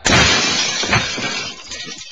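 Car crash: a sudden loud impact with glass shattering, a second hit about a second later, and the noise dying away. It is the collision of a driver distracted by a phone call.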